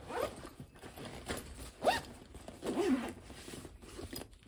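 Backpack zipper being pulled, about three quick strokes, each a short rising zip, with rustling of the bag's fabric between them.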